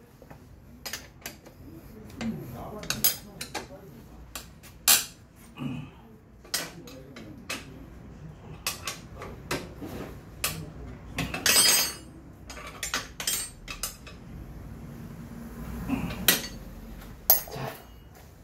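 Scattered metallic clicks and clinks of hand tools and parts on a scooter's rear brake and exhaust assembly, irregular, with a longer rattle about eleven seconds in.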